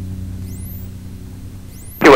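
Background music fading out, its low held notes slowly dying away.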